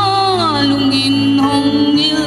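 A woman singing a slow song into a microphone over sustained instrumental accompaniment. Her voice slides down in pitch, then holds a long low note.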